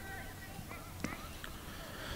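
Faint distant voices calling out across a football pitch, with a single sharp click about a second in.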